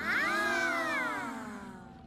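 A drawn-out vocal exclamation from cartoon characters, starting suddenly, then sliding down in pitch and fading out over about two seconds.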